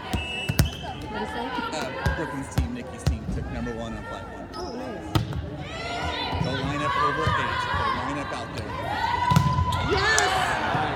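Volleyball rally in a gymnasium hall: the ball struck about six times, each hit a sharp slap, with players and spectators calling and shouting, louder in the second half.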